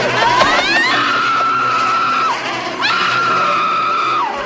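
A woman screaming: a rising shriek, then a long, steady high scream, a short break, and a second long scream.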